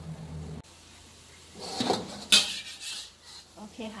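Metal spatula scraping and clanking against a wok while turning a frying roti, with one sharp, loud clank a little past the middle.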